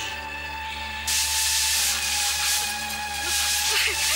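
A loud, even hiss cuts in suddenly about a second in and holds steady, over a constant low hum and a faint steady tone.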